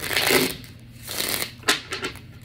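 A tarot deck being shuffled by hand: two short bursts of shuffling, then a sharp snap near the end.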